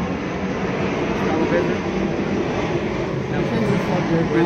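A steady, loud rumble of engine noise that holds level throughout.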